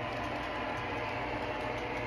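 MTH Union Pacific propane turbine model train running along the track as it moves away, a steady low rumble and hiss with no sharp events.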